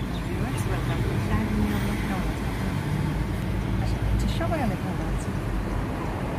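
Steady low rumble of a car's engine and road noise heard inside the cabin, with faint voices over it.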